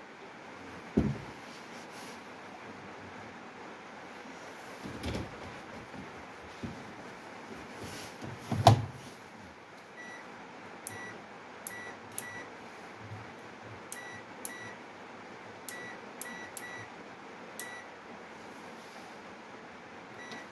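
A few knocks and clunks, the loudest a thud about nine seconds in as the detergent drawer of a Haier front-loading washing machine is pushed shut. Then a string of about a dozen short, high electronic beeps, singly and in quick pairs, as the control panel buttons are pressed to set the wash options.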